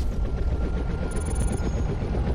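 Logo intro sound effect: a dense low rumble with a fast, fluttering rattle and a faint thin whine above it.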